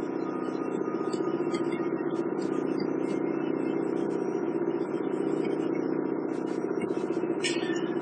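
A steady hum made of several held tones, unchanging in level.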